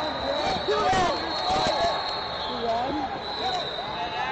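Wrestling on a mat in a large hall: shoes squeak in short chirps and bodies thud against the mat a few times, with voices in the background.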